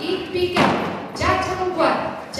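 A voice calling dance steps over a microphone and PA, with a dance step landing as a thump on a wooden floor about half a second in.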